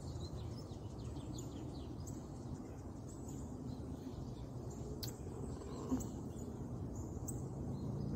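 Outdoor background noise: a steady low rumble with faint, short bird chirps during the first two seconds or so, and a single sharp click about five seconds in.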